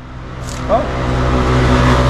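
Small motorcycle's engine idling steadily, growing louder about half a second in.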